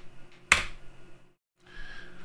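Computer keyboard: one sharp, loud keystroke about half a second in, the Enter key sending the corrected apt install command, with a few fainter key taps. A faint low steady hum lies underneath.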